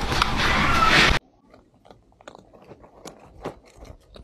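Cats crunching dry kibble. It is loud and close for about the first second, then after a sudden cut it turns into quieter, scattered crunches.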